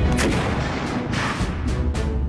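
Black-powder gunfire from a battlefield scene: a sharp blast right at the start and another, longer burst about a second in, over background music with a low rumble.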